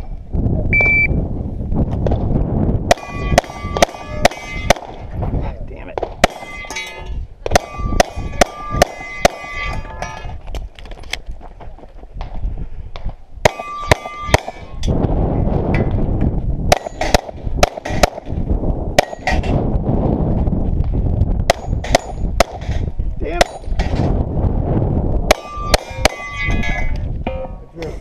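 A shot timer beeps once, then a semi-automatic pistol fires strings of shots at steel targets. Most shots are followed by the clang and ring of a plate being hit. The shots come in several quick bursts with short pauses as the shooter moves between arrays, and the last shots fall just before the end.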